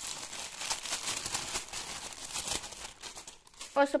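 Tissue paper rustling and crinkling as hands rummage through and lift the sheets, a dense crackle of small ticks for about three seconds before it dies down near the end.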